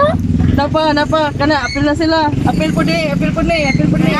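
Voices talking over the steady running of a passenger vehicle's engine and road noise, heard from inside the cabin.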